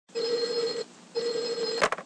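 A steady electronic ringing tone sounds twice, each ring under a second long with a short gap between, followed by a sharp click.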